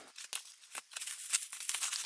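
Cardboard mailer and bubble wrap being handled as a CD is slid out: a run of small crackles, scrapes and rustles that gets busier and a little louder in the second second.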